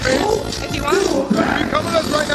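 Loud shouting and talking voices over music playing in the background.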